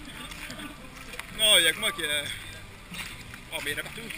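People's voices talking, with one loud, high-pitched call or exclamation about one and a half seconds in.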